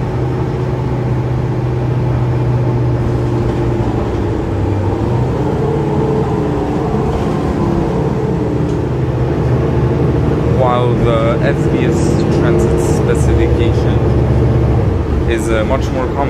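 Mercedes-Benz Citaro city bus's OM906hLA diesel engine running under way, heard from inside the passenger cabin. Its note shifts in pitch about five seconds in and again about ten seconds in, and grows a little louder in the second half, with brief voices over it.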